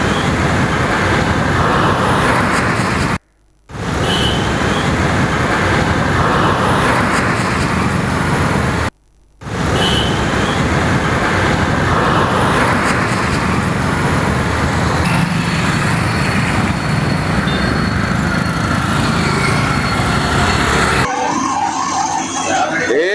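Road traffic noise at a busy junction, with vehicles passing steadily close by. It is loud and even throughout, and cuts out briefly twice, about three and nine seconds in.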